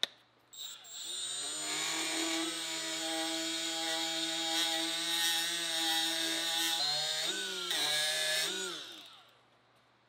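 Cordless die grinder (Milwaukee M12) with a red surface conditioning disc, set to 10,000 RPM, spinning up about half a second in and running with a steady whine while buffing scratch marks out of hot rolled steel. About seven seconds in its pitch dips and wavers, then it winds down with a falling pitch near the end.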